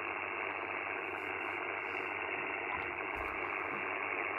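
Steady hiss of 40-metre band noise from the Icom IC-705 transceiver's speaker, receiving lower sideband on 7.198 MHz with no station on frequency. The top end of the hiss is cut off by the receive filter.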